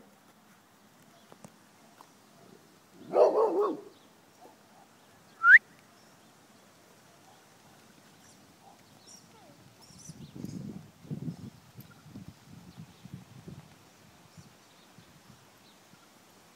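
A short loud call about three seconds in, then a single sharp rising chirp that is the loudest sound, followed a few seconds later by a run of soft, low, uneven thuds of a pony's hooves on a sand arena.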